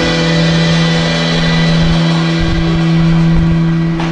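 Telecaster-style electric guitar and electric bass holding a long final chord that rings on steadily through amplifiers, the sustained ending of a live blues song.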